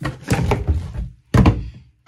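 Two knocks of a plastic soap bottle being knocked over in a bathtub, one at the start and one about a second and a half in, each dying away quickly.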